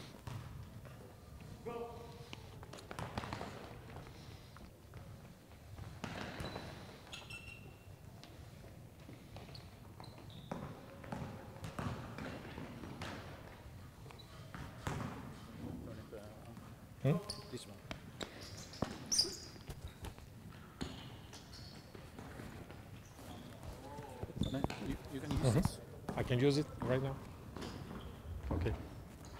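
Basketballs bouncing on a sports-hall court, mixed with scattered distant voices and calls that grow louder near the end.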